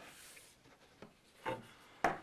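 Faint rubbing of carbon fiber reinforcement rods sliding into routed channels in a wooden guitar neck blank, with a light tick about a second in and a soft knock about half a second later.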